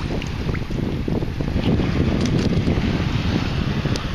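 Wind buffeting the microphone over sloshing water, a steady rumble with a few faint clicks.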